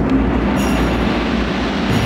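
Loud, steady rumbling noise over a low hum, part of the drama's dramatic background score.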